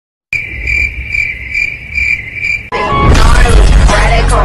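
Cricket chirping: a high trill repeated about twice a second, starting a moment in. It stops abruptly as loud hip-hop music cuts in about two-thirds of the way through.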